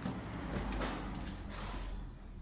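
Rustling and scraping handling noise from plants being pulled and handled off camera, over a steady low rumble.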